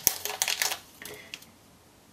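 Crinkling and small clicks of a metallic anti-static bag being handled and opened, starting with a sharp click and dying away after about a second and a half.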